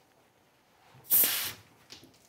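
Pressurised carbonation gas hissing out as the cap of a two-litre plastic soda bottle is twisted open. One sharp hiss starts about a second in and fades within half a second.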